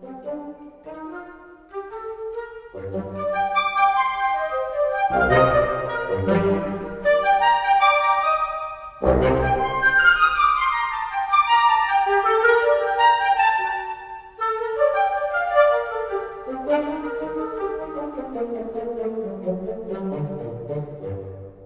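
Sampled woodwind ensemble recorded in octaves (Spitfire Audio Originals Epic Woodwinds, short articulation) played live from a keyboard: quick runs of short, detached notes, with heavier accented chords about five and nine seconds in and a falling run soon after ten seconds. The sound is a blend of close and room mic signals.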